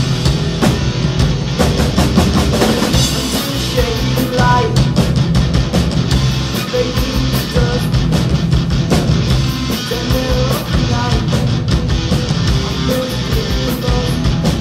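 Rock band playing live: electric guitars, bass guitar and a drum kit in an instrumental passage without singing. A repeating higher melodic figure comes in about four seconds in.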